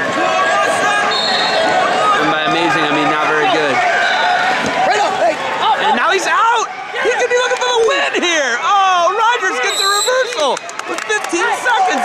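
Many voices shouting over one another, spectators and coaches yelling at once. From about halfway through the yelling gets busier and higher-pitched.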